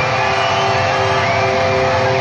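A rock band playing live and loud, electric guitar to the fore, with two notes held long and steady through the band sound.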